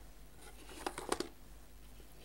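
A few light clicks and rattles of pens and plastic cases being handled in a cardboard box as a technical pen is picked out, clustered around the first second.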